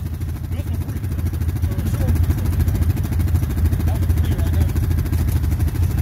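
ATV engine idling steadily, an even low pulsing with no revving.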